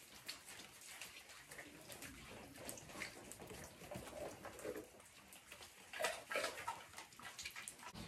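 Faint patter of rain and dripping water on a wet patio, with a few soft short sounds about three, five and six seconds in.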